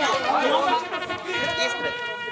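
Several people talking over one another in group chatter. A steady tone joins in during the second second.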